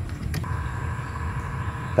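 A steady low background rumble, with a faint click as a blade fuse is pulled from the headlight relay's fuse holder. A steady high tone comes in about half a second in.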